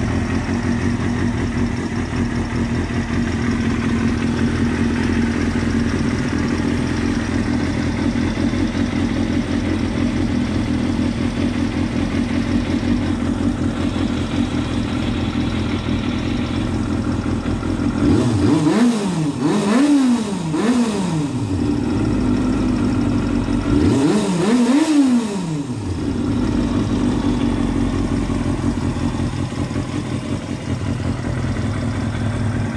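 Kawasaki 250 cc four-cylinder sportbike engine, breathing through an aftermarket Shimura slip-on exhaust, idling steadily. Somewhat past halfway it is revved in three quick throttle blips, and a few seconds later in two more, dropping back to idle each time.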